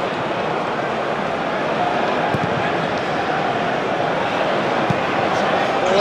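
Football stadium crowd: a steady din of many voices from the packed stands.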